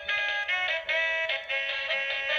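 Electronic tune from a set of musical chili pepper lights: a thin, bass-less melody of quick notes changing several times a second.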